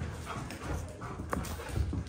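Giant Alaskan Malamute in rough play: paws thudding and scrabbling on a wooden floor, with short dog vocal sounds and one sharp click about two-thirds of the way in.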